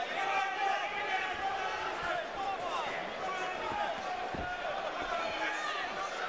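Boxing crowd talking and shouting, many voices at once, with a single dull thud about four seconds in.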